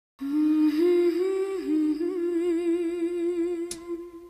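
A woman humming a slow wordless melody: a few held notes, the last one long and wavering with vibrato, fading out near the end with a short click.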